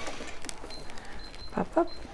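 Quiet handling of fabric at a domestic sewing machine as it is set under the presser foot, with a single click about half a second in and a brief vocal sound near the end.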